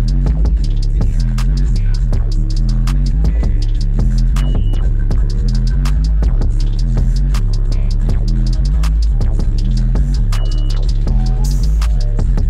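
Bass-heavy music played at high volume through four Sundown subwoofers on a Deaf Bonce 20,000-watt amplifier, heard inside the vehicle's cabin. A deep bass line steps from note to note under a fast run of sharp ticks.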